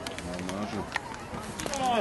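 Footballers and spectators shouting and calling out across the pitch, several voices overlapping, with a couple of sharp knocks in between.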